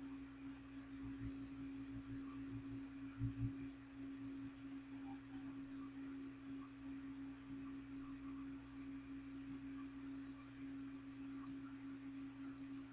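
A steady low hum, one held tone, with a few soft low thumps about a second in and again about three seconds in.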